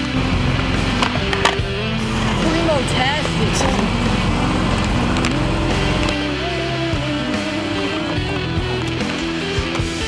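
Rock music soundtrack over skateboard sounds: wheels rolling on concrete and a couple of sharp clacks of the board about a second in.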